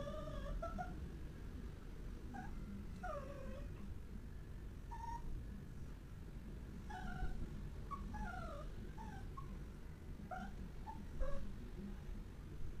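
A cat meowing over and over: short calls, many of them falling in pitch, coming every second or so with a short lull in the middle. A soft low knock sounds near the end.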